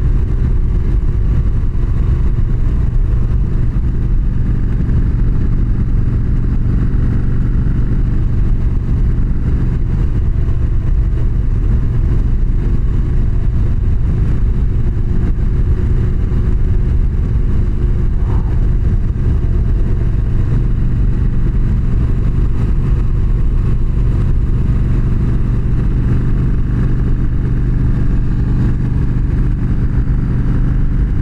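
Yamaha V-Star 1300's V-twin engine running at a steady cruising speed, heard from on the motorcycle while riding.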